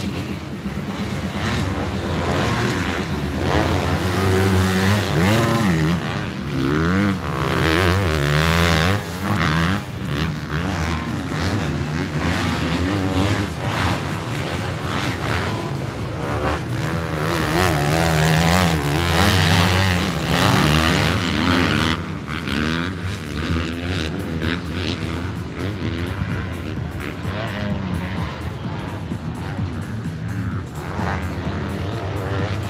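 Motocross dirt bikes racing on the track, engines revving up and down as the riders accelerate through the turns and over the jumps. They are loudest as the bikes pass, a few seconds in and again just past the middle, then quieter near the end.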